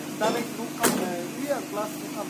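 People's voices talking in the background, with one sharp click a little under a second in, over a steady low hum.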